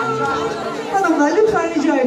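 Many people talking at once, with music stopping about half a second in.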